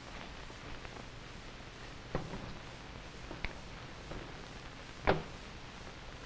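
Light knocks and clicks of jars and equipment handled on a table, the loudest knock about five seconds in, over the low steady hum and hiss of an old recording.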